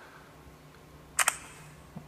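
iPhone lock sound, a quick double click about a second in, as the screen switches off and the phone goes to sleep.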